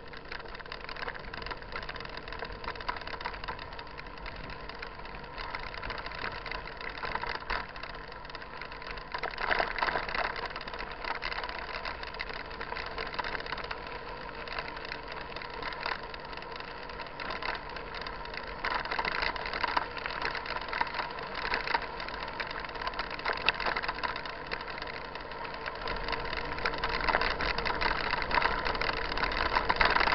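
Mountain bike rolling down a dirt road, heard from a camera mounted on the bike: tyres crunching on the gravel and the frame and parts rattling over the bumps, with a steady hum underneath. It grows rougher and louder in stretches, most of all toward the end.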